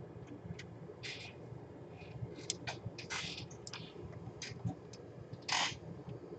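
Scattered small clicks and a few short scrapes of hands handling parts and cables on a workbench, the loudest scrape near the end, over a low steady hum.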